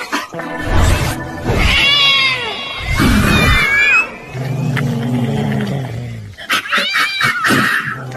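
A cat yowling angrily in high, bending cries, once about two seconds in and again near the end. The cries are laid over background music with deep low hits.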